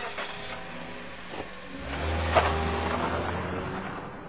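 A taxi's engine as a radio-drama sound effect: the car pulls away, its low engine note swelling about two seconds in and then fading as it drives off. A short sharp click comes just after the engine swells.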